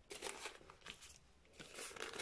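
A few faint, brief rustles of baking paper being pulled across a wooden chopping board.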